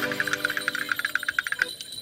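The last held chord of an accordion piece fading away, with a rapid run of light clicks, about ten a second, that stops shortly before the end.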